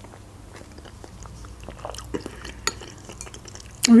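Close-miked eating of chicken soup: sipping from a metal spoon and chewing, with small wet mouth clicks and smacks and a few light clinks scattered through, a couple of sharper ones past the middle.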